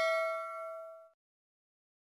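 Notification-bell 'ding' sound effect for an animated bell icon, its ringing tone dying away and cutting off about a second in.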